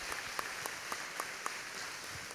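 Audience applauding, with many separate claps standing out over a steady hiss of clapping.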